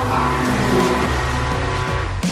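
Background music with chords and a steady bass line.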